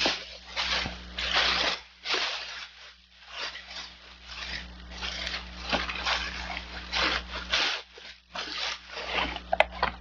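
Thin plastic shopping bag rustling and crinkling in irregular bursts as it is rummaged through, with a sharp click near the end.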